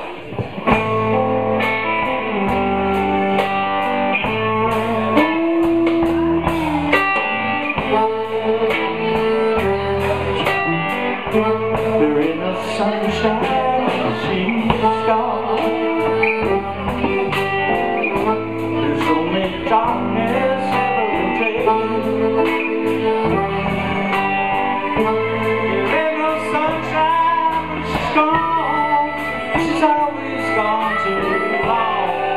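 Live blues band coming in together just after the start and playing on with a steady beat: electric guitars, bass and drum kit, with a man singing over them.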